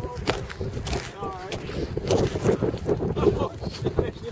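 Wind buffeting the microphone in a rough low rumble, with scattered short knocks and people's voices in the background.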